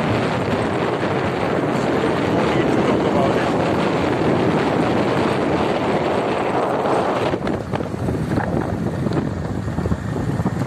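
Vehicle driving along an unpaved dirt road: steady road and engine noise with wind buffeting the microphone, the hiss easing a little about seven seconds in.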